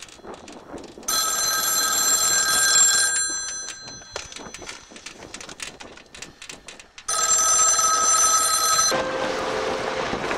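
Pacific Bell payphone bell ringing with an incoming call: two rings of about two seconds each, roughly four seconds apart. Near the end a steady rushing noise takes over.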